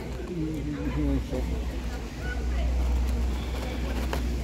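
A steady low rumble that swells in the second half, with brief murmured voice sounds in the first second.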